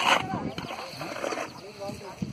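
People's voices talking at the roadside, with a digging tool striking the ground in a trench once at the start.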